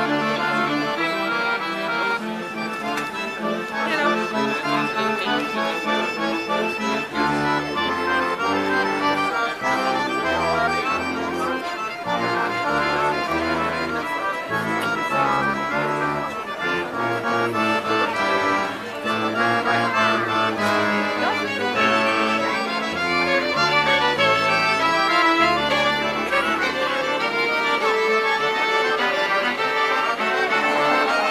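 Street band playing traditional folk music, led by accordions with violin, over a bass line of short held notes from tuba and bass balalaika.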